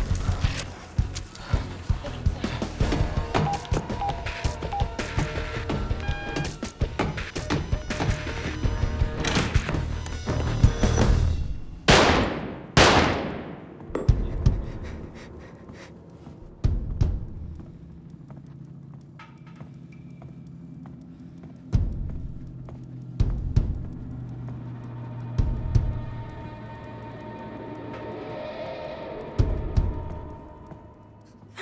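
Tense dramatic score built from sound design: a busy run of sharp percussive hits over a low drone, then two falling whooshes in quick succession about halfway through. After them the music thins to the low drone, broken by a few heavy thuds a second or two apart.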